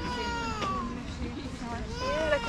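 A high-pitched, drawn-out cry that falls slowly in pitch for about a second, followed by shorter cries near the end, over a low background rumble.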